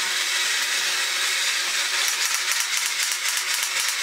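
A battery-operated 1960s Japanese tin Fighting Robot toy running: its small electric motor and gear train whir with a steady, fast rattle of gears as it walks, the clicking growing denser about halfway through. The motor had been stuck from long disuse and is now running on its own.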